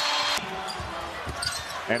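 Arena crowd cheering loudly after a made basket, cut off abruptly less than half a second in, followed by lower, steady crowd noise in the arena.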